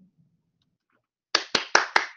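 One person clapping: sharp, evenly spaced claps about five a second, starting after more than a second of quiet.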